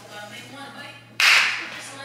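A single sharp crack, like a whip crack or a hard slap, about a second in, fading away over half a second.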